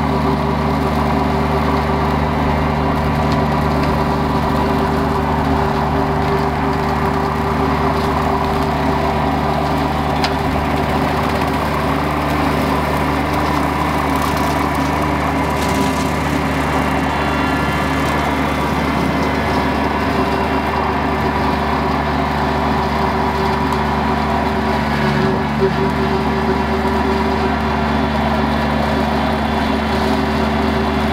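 Kubota BX23S subcompact tractor's three-cylinder diesel engine running steadily at working speed, driving a Land Pride 48-inch rotary brush cutter through tall grass.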